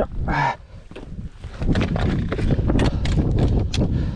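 Scrambling over rocks: a dense run of clicks, knocks and scrapes from hands, boots and trekking poles on granite, with rustling and a low rumble on the microphone, starting about a second and a half in.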